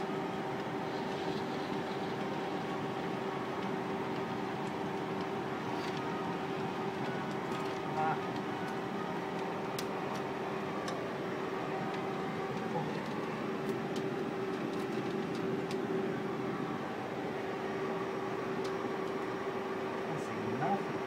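Steady machine hum of projection-room equipment, holding a few steady tones, with occasional light clicks as 35mm film is threaded by hand through a projector's sprockets and gate.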